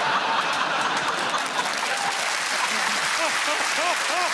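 Studio audience applauding a joke, a steady dense clatter of many hands clapping.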